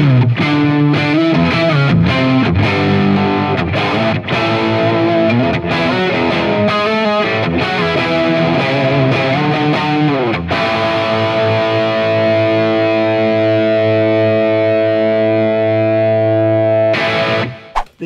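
Gibson 2016 Les Paul Standard electric guitar played through a distorted amp: fast riffing with chords and single notes, then a chord struck about ten seconds in and left ringing for several seconds before it is cut short near the end.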